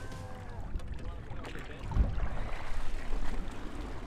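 Wind rumbling on the microphone over water sloshing at the side of a boat as a fish is lifted out beside the hull, with a single dull thump about halfway through.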